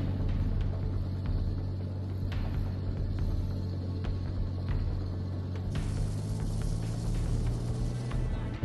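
Background music over a steady low rumble of armoured vehicles' engines driving in a column. A hiss comes in about six seconds in.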